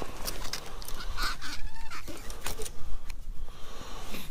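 Handling noise as a bluegill is lifted up out of an ice-fishing hole by the line: scattered sharp clicks and rustles of gloves and line, over a low rumble of wind on the microphone. Two short pitched sounds come about a second in and just after.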